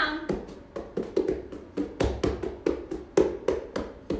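Open hands patting repeatedly on a yoga mat, about three or four quick pats a second, miming flattening pizza dough.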